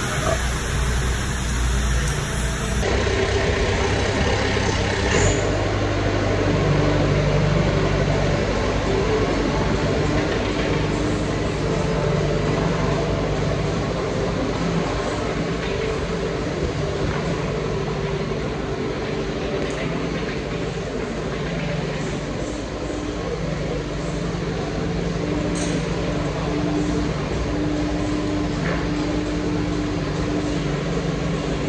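Hyundai skid steer's diesel engine running steadily under load, its pitch shifting a little as the bucket is tilted forward on the hydraulics. The sound changes abruptly about three seconds in.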